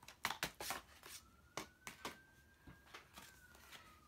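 Greeting cards and papers being handled on a table: a few light taps and rustles as one card is set aside and the next is picked up, mostly in the first second and a half. A faint high tone hums under the rest.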